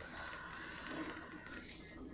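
Quiet room tone: a faint, steady background hiss with no distinct sound standing out.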